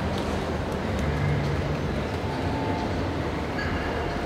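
Steady low rumbling background noise of a large indoor arena with spectators, with no distinct events standing out.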